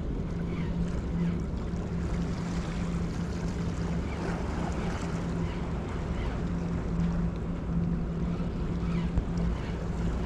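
Steady low hum of a vessel's engine, with small waves lapping and splashing on the rocks and some wind on the microphone.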